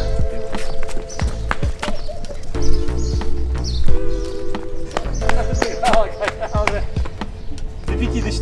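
Background music with a steady low bass and held chord tones, with short sharp taps and brief voice sounds heard over it.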